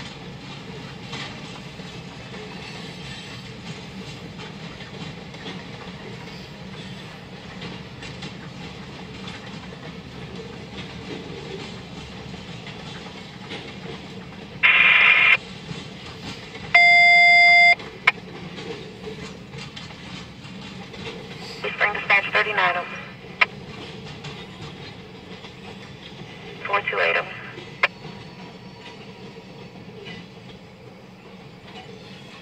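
Long freight train of covered hoppers and tank cars rolling past a grade crossing, with a steady rolling noise and wheel clickety-clack. About halfway through, a railroad scanner radio cuts in with a short burst of static, followed by a brief electronic tone. Later come two short bursts of radio voice.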